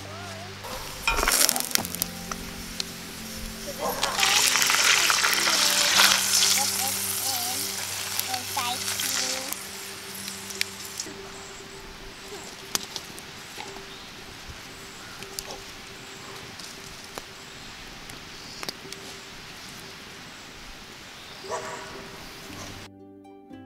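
Wood campfire burning with a hiss and scattered pops and crackles, louder for several seconds in the first half. Soft background music with held notes plays underneath.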